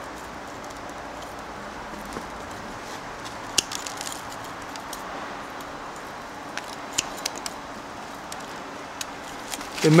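Bonsai pruning shears snipping small branches from a Lebanon cedar: a scattering of short, sharp clicks over a steady background hiss.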